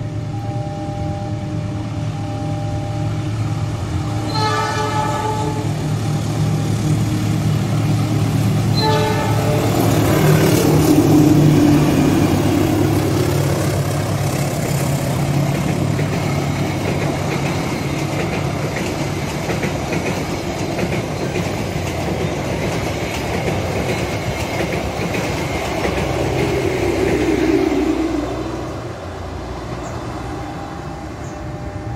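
Passenger train sounding its horn in several blasts as it approaches, then passing close by with a steady engine drone and the rumble of wheels and coaches, loudest about 11 seconds in. The noise drops off suddenly as the last coach goes by near the end.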